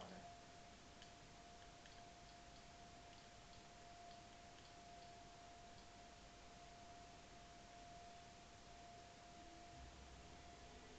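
Near silence: quiet room tone with a faint steady tone held throughout and a few faint ticks.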